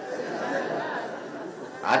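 A seated audience in a large hall answering a spoken greeting: many voices at once in a steady murmur of chatter. A single man's voice on the speaker system comes back in near the end.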